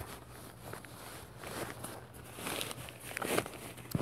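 Nylon carry bag rustling and scraping as a folded camp cot is slid out of it by hand. The handling noise is faint and irregular and gets louder about three seconds in.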